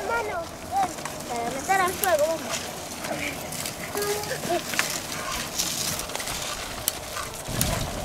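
Faint children's voices calling, with scattered light clicks and crackles of footsteps and dry branches on a dirt path. A low wind rumble on the microphone comes in near the end.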